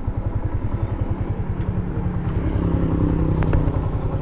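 Yamaha Sniper 150's single-cylinder four-stroke engine idling steadily, with an even low pulsing.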